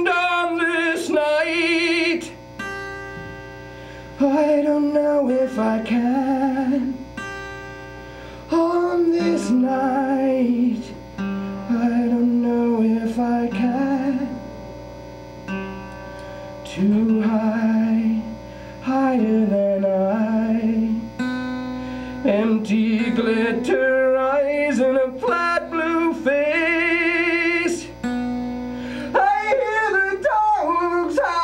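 A man singing held, wavering notes over a plucked acoustic string instrument. The singing comes in phrases with short breaks between them.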